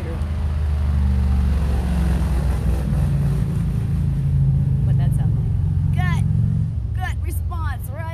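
A woman humming one long, low, steady note with her mouth closed for about six and a half seconds, the pitch stepping up slightly around three seconds in, which she feels as a vibration in her body. A few short bird chirps come near the end.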